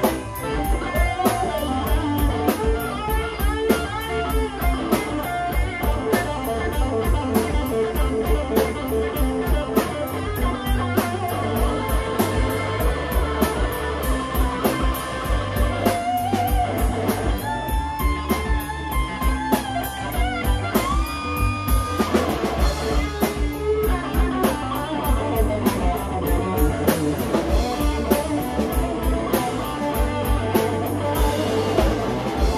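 Live band playing an instrumental passage: an electric guitar lead with bent notes over a steady drum-kit beat.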